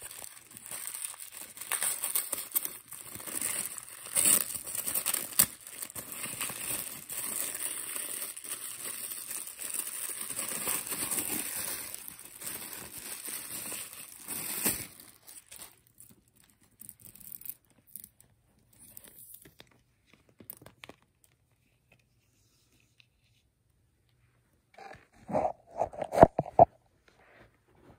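Tissue paper crinkling and rustling as it is pulled off and unwrapped from a handbag's chain strap, dense for about fifteen seconds and then thinning to a few faint rustles. A couple of short knocks near the end.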